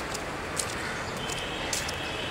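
Steady city street background noise with a few faint, short ticks.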